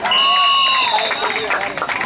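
A referee's whistle blown once, a steady high tone lasting about a second and a half, sounded as the tackle ends the play. Over it, a spectator's held shout, and then clapping and cheering from the crowd.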